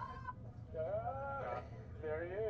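A person's drawn-out vocal call, about a second long, rising and then falling in pitch, over a steady low hum.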